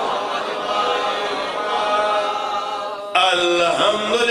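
Several men's voices chanting together in one blended, continuous sound. About three seconds in, it breaks off abruptly into a single male voice chanting a wavering, melodic line.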